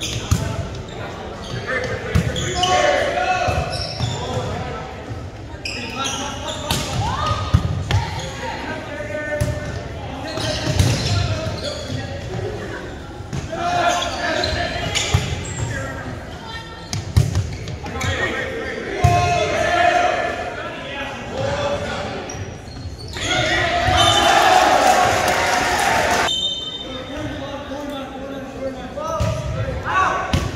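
Echoing gym sound of an indoor volleyball match: shouting voices from players and spectators, with sharp hits and bounces of the ball on the hardwood. A loud burst of crowd noise about two-thirds of the way in.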